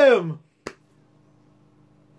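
A man's drawn-out shout that falls in pitch and trails off, then a single sharp click about two thirds of a second in. After it, only a faint steady room hum.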